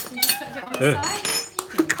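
A metal spoon clinking against a plate, several separate light clinks, with some voices in the background.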